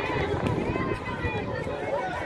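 Several voices calling out and chattering at once, overlapping so that no words come through, as from players and spectators around a football pitch.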